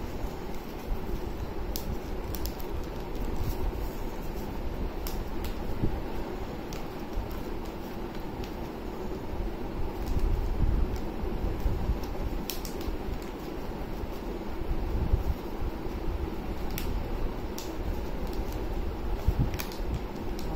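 Sheet of paper being folded and creased by hand, with scattered soft crinkles and clicks, over a steady background hum.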